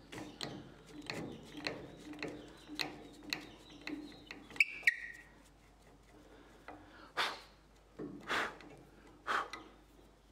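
Stabilized maple burl blank twisted by hand on the steel threaded end of a bottle stopper mandrel, the notched threads cutting into the hard wood with rasping strokes about twice a second. The blank is then backed off, with two sharp clicks just before the halfway point, followed by three louder scuffs near the end.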